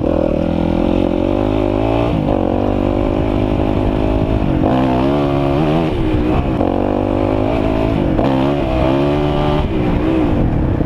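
Dirt bike engine running under way on a trail, its revs rising and falling again and again with the throttle, with sharper swings about halfway through and again near the end.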